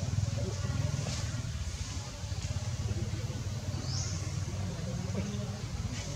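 A steady low rumble, with faint voices in the background.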